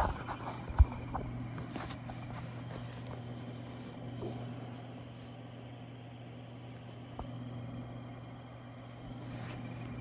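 Handling noise from coverall fabric being stretched and moved close to a phone microphone: soft rustling with a sharp bump about a second in and a smaller click later, over a steady low hum.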